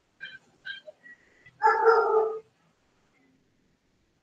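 An animal's cries: two short high yelps, then a louder, longer cry about two seconds in.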